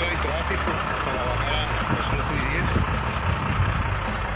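Steady rumble of road traffic from a long queue of slow-moving cars, with indistinct voices over it.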